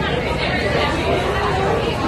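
Several people talking over one another in a crowd, an indistinct babble of voices with no single clear speaker.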